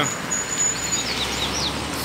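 Double-collared seedeater (coleiro) singing: a thin, high steady whistle held for about a second, then a few quick down-slurred notes. Under the song runs a steady low rumble of distant traffic.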